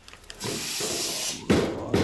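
Rustling and rubbing of plastic wrapping as a hand handles a shelved audio unit, with a sharp crackle about one and a half seconds in.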